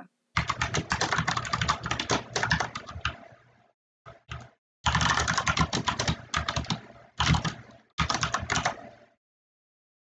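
Typing on a computer keyboard: rapid runs of keystrokes in several bursts with short pauses between them, ending about nine seconds in.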